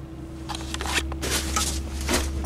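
Rustling and light knocks of things being handled and shifted, a plastic carrying case and a plastic shopping bag among them, getting busier about half a second in, over a steady low hum.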